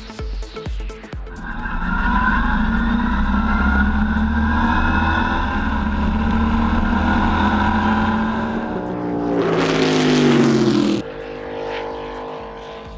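The eight-cylinder engine of a Viking race lawnmower runs hard at high, steady revs. About nine seconds in its note drops while a rush of noise builds and cuts off sharply, as in a fast pass-by, and a quieter engine note follows.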